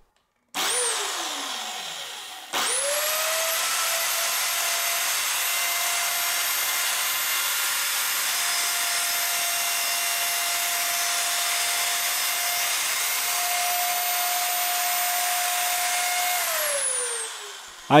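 Electric drill motor driving a small table saw with its circular saw disc set to wobble for cutting a dado: a brief start that spins down, then a restart with a steady high whine for about fourteen seconds as the blade cuts into a pine board. Near the end it is switched off and coasts down, its pitch falling.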